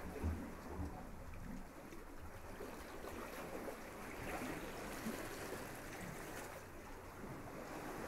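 Steady rushing of a waterfall pouring into a pool, with some low wind rumble on the microphone in the first second.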